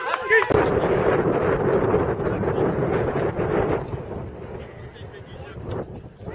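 Wind buffeting the camera microphone, a loud rumbling rush that sets in about half a second in and eases off after about three seconds, with a brief shout at the start.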